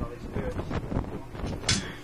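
An indistinct person's voice close to the microphone, in short broken sounds with a sharp hiss near the end, over a low steady hum.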